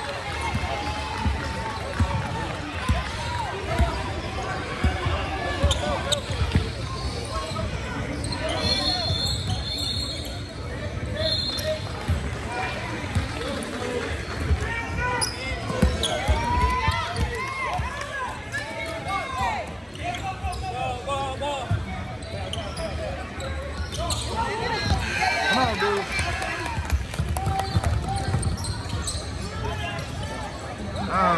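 A basketball being dribbled on a hardwood gym floor, with repeated bounces through play, under players' and spectators' voices calling out.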